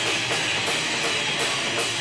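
Live rock band playing: distorted electric guitar over a drum kit, with a cymbal struck steadily nearly three times a second.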